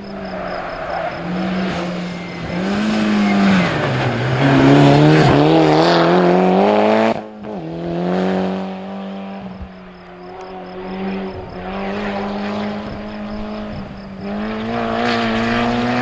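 Mitsubishi Lancer rally car's engine driven hard, its revs climbing under acceleration to the loudest point and then dropping suddenly about seven seconds in at a lift or gear change. It then pulls again, its pitch rising and levelling off as the car drives away and comes back past.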